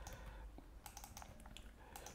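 A few faint computer keyboard keystrokes, scattered clicks over an otherwise near-silent room.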